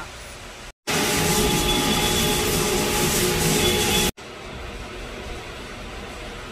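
Loud, steady machine noise with a few steady whining tones running through it. It cuts in abruptly about a second in and stops just as suddenly about three seconds later, with quieter room tone before and after.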